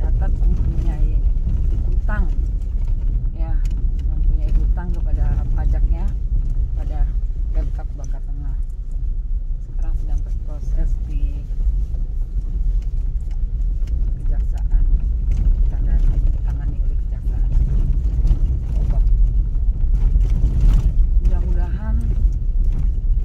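Car interior noise while driving over a rough, potholed dirt road: a steady low rumble of engine and tyres, with scattered knocks and rattles from the bumps.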